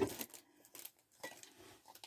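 Handling noise from a ceramic mug being picked up and moved: one sharp knock at the start, then a few faint clicks and clinks.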